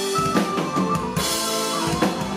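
A folk metal band playing live: electric guitar and held melody lines over a drum kit, with bass drum and snare hits.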